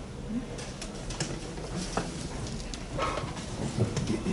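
Rustling of book pages being leafed through and a handheld microphone being handled, with a few soft clicks and knocks from the handling.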